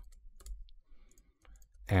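Faint, scattered clicks from a computer keyboard and mouse during screen-recorded design work, with a man's voice starting near the end.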